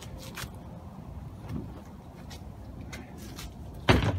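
Low, steady outdoor rumble, with a few faint ticks scattered through it and a sharp click just before the end.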